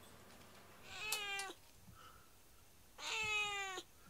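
A domestic cat meowing twice: a short meow about a second in, then a longer one about two seconds later, each sagging a little in pitch at the end.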